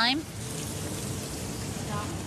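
Stir-fry of duck and peppers sizzling steadily in a hot wok.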